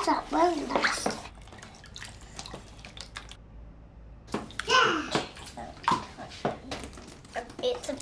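Small children's hands mixing and squishing powder paint and water into a thick wet paste in a tray, a wet, messy mixing sound, with young children's voices over it.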